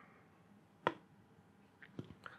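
The last of a milk stout being poured faintly from a can into a glass, with a single sharp tap a little under a second in and a smaller click near the end.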